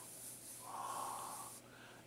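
A person's soft breath drawn in through the nose, starting about half a second in and lasting about a second.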